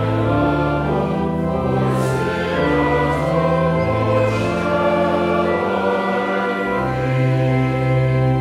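Congregation singing a hymn refrain with organ accompaniment. About seven seconds in, the organ settles on a long held low note.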